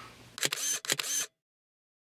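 A short edited-in sound effect: a quick cluster of sharp clicks lasting under a second, followed by a second of dead silence.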